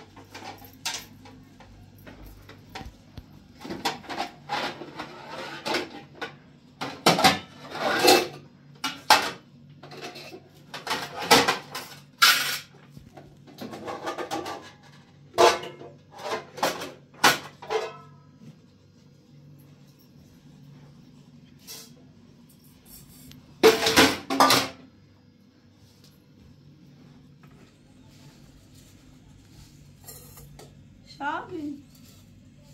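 Metal pots and kitchen dishes clattering and knocking as they are handled: many quick knocks and scrapes through the first half, a short burst of clatter about 24 seconds in, over a faint steady low hum.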